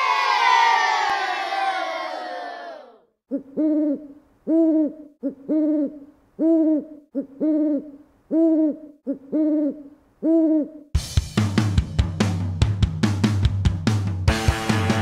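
A falling, sweeping sound for about three seconds, then an owl hooting eight times, about once a second, each hoot rising and falling in pitch. Rock music with drums starts near the end.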